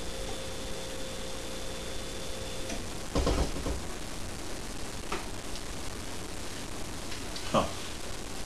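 Steady room hiss while a man sips beer from a glass, with a short breath out about three seconds in as he lowers the glass after swallowing.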